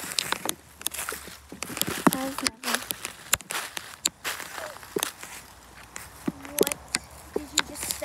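Footsteps walking through dry leaves and twigs on a forest floor, with irregular crunches and sharp snaps. A few brief vocal sounds from a person come in between.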